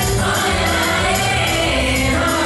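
A group of voices singing together over music, loud and steady.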